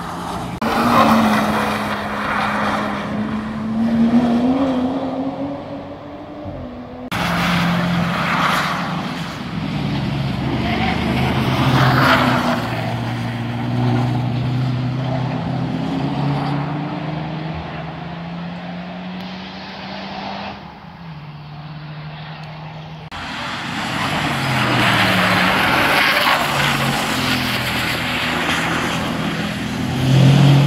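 Car engines passing one after another, their pitch rising and falling as the cars slow for the corner and accelerate away, with sudden jumps about a quarter and three quarters of the way through.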